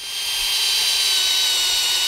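Cordless drill running steadily with a two-inch Forstner bit, boring a shallow counterbore into a living tree trunk. The motor comes up to speed in the first half second, then holds a steady high whine.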